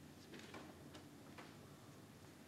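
Near silence: steady low room hum with a few faint clicks from a laptop being operated.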